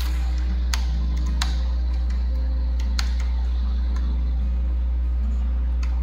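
Computer keyboard keys clicking now and then as text is typed, a few separate clicks over a steady low electrical hum.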